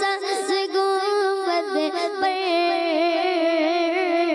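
A boy singing solo into a microphone: one continuous melodic line of long held notes that waver and bend, with no instruments.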